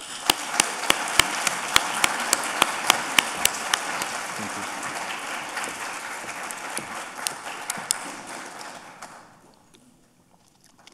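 Audience applauding, with one person's louder, sharper claps close by standing out over the crowd. The applause starts suddenly and dies away about nine seconds in.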